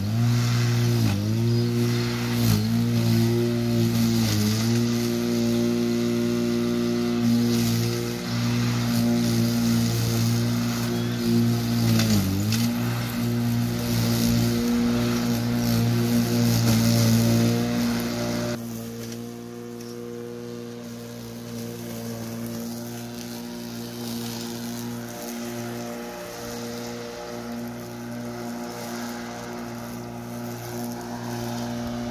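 Corded electric rotary lawn mower running steadily, its motor hum dipping in pitch briefly several times as the blade bogs in tall, overgrown grass. The sound drops noticeably quieter about two-thirds through.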